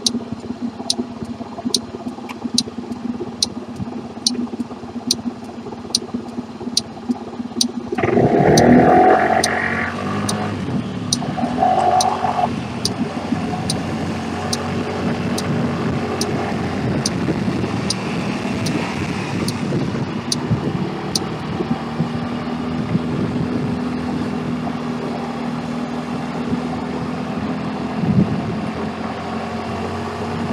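Small motorbike engine running, then opening up with a rush of engine and wind noise about 8 seconds in and settling to a steady hum. Over it, a regular turn-signal ticking, about two ticks a second, stops about 21 seconds in.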